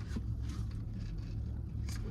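Car idling, heard from inside the cabin: a low, steady rumble.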